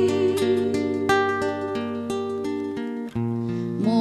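Acoustic guitar playing an instrumental passage between sung lines: single plucked notes ring out one after another over sustained bass notes. A woman's singing voice comes back in right at the end.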